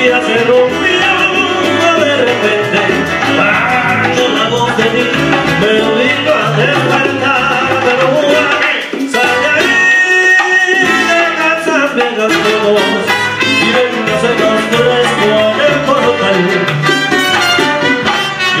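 Live Latin band playing a salsa-style number, with a man singing over strummed acoustic strings, maracas and hand percussion. The music thins briefly about halfway through.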